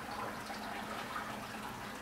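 Steady background hiss with a faint low hum, with no distinct knocks or handling sounds standing out.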